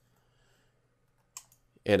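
Near silence broken by one short click a little over a second in.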